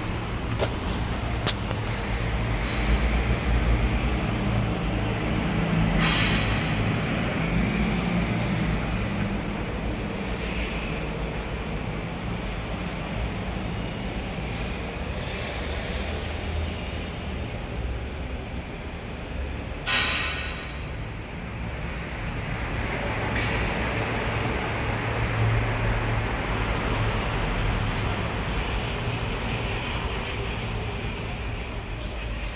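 Steady low traffic and engine rumble in a parking garage, with two short hissing bursts about six and twenty seconds in.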